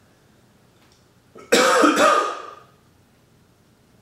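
A man clearing his throat with a cough: two loud harsh bursts about half a second apart, starting about a second and a half in and fading within about a second.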